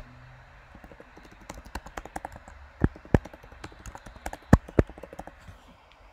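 Typing on a computer keyboard: a quick, irregular run of key clicks with several much louder key strikes around the middle, stopping shortly before the end.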